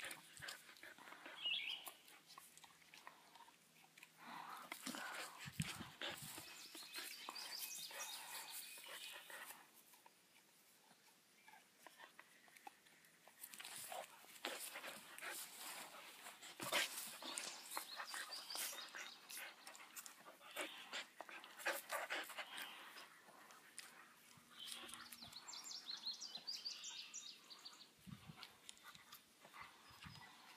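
Faint, irregular sounds of a dog playing with and chewing at its leash on grass: the dog's breathing and mouthing of the lead, with scattered clicks and rustles.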